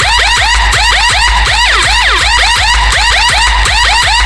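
DJ remix music with a police-siren horn sample chirping in quick repeated rise-and-fall sweeps, about four a second, over heavy deep bass.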